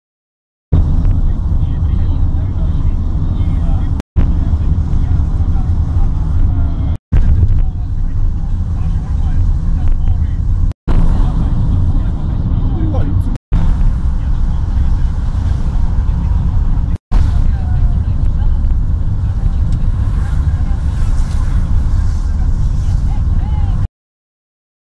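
Steady low rumble of road noise from a moving car, in short clips joined by abrupt cuts. Indistinct voices can be heard underneath.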